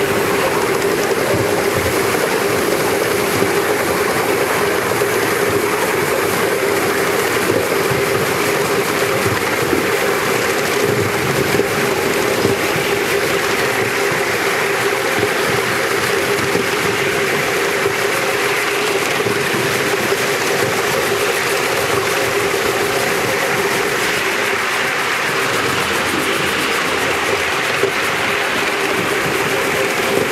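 Steady rolling noise of a passenger-carrying miniature railway train running along raised track, heard from on board just behind the model locomotive, with a steady hum through it.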